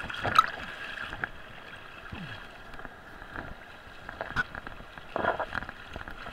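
River whitewater splashing and gurgling against a camera held at the waterline, with a constant rush of water. Sudden sharp splashes come about half a second in and again near the end.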